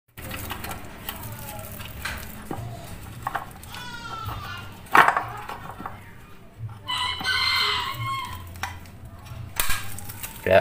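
A rooster crows once, for about a second and a half, shortly past the middle, with shorter sliding calls earlier. A sharp metal click comes about five seconds in as a screwdriver works a slider spring on a scooter's CVT cover. A low steady hum runs underneath.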